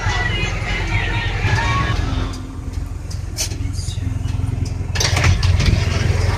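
Low, steady rumble of a city shuttle bus's engine and road noise heard from inside the passenger cabin, with music and voices mixed in over it.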